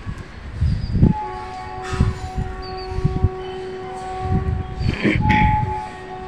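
Strong wind gusting on the phone's microphone, with a distant horn holding a steady chord for about four seconds, breaking off briefly and sounding again near the end. A few faint bird chirps.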